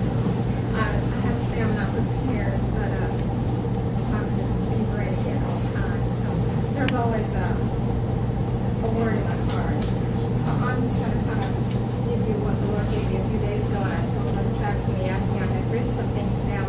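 Indistinct speech over a steady low hum that runs unbroken underneath.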